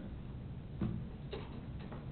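Room tone with a low steady hum and three short taps, about a second in, midway and near the end.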